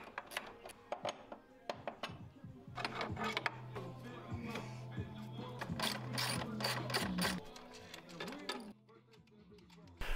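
Hand ratchet wrench clicking in quick runs as bolts on a snowmobile's front suspension are backed off. A steady low hum runs under the clicks through the middle, and the sound drops to near silence shortly before the end.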